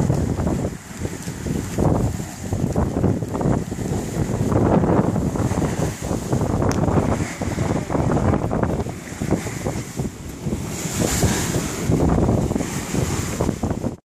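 Wind buffeting the microphone in uneven gusts over the rush of water past the hull of a 42 ft Endeavour sailboat heeled under sail, with one brief click about halfway through.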